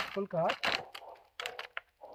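A man's voice giving short cues to a dog, with a few sharp clicks and a brief rustle in the second half.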